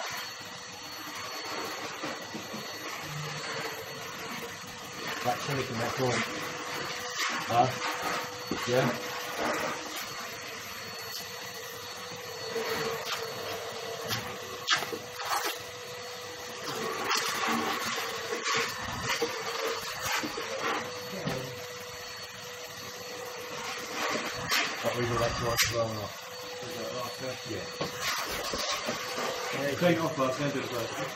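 Workshop vacuum cleaner running steadily with a constant whine, with occasional sharp knocks of tools on the stone worktop.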